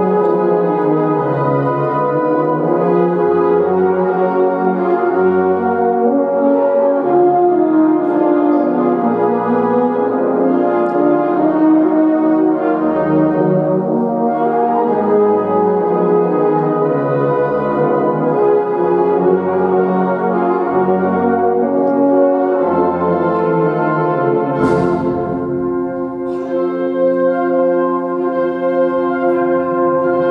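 Student concert band playing, with brass (French horns, trumpets, trombones, tubas) and woodwinds (flutes, saxophones) sounding full sustained chords. A single crash rings out late on, and the band settles onto a long held chord.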